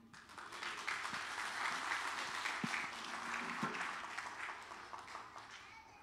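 A congregation applauding. The clapping builds within the first second, holds steady for a few seconds, then thins out toward the end.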